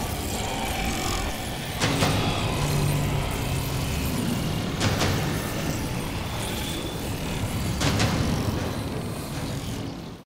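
Dark, rumbling drone from a dramatic score, with a sharp hit about every three seconds, fading out near the end.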